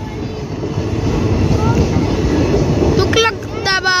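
Passenger coaches rolling past at close range, their wheels giving a loud, steady rumble on the rails.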